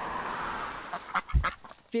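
Steady hiss of road traffic for about the first second, then a few short, sharp quacks from white domestic ducks, with a low thump among them.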